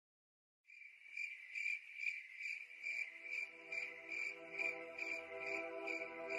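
Rhythmic insect chirping, a little over two chirps a second, starting about half a second in, with soft held music notes fading in underneath.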